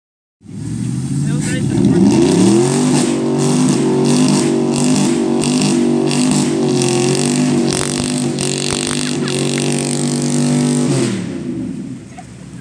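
Pickup truck engine revving hard under load while towing a second truck out of deep mud. The pitch climbs over the first couple of seconds, holds high with a dip midway, and drops off near the end.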